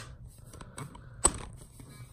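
Handling noise as a phone camera is repositioned: faint rustling of a fleece sleeve near the microphone with small clicks, and one sharp knock a little over a second in.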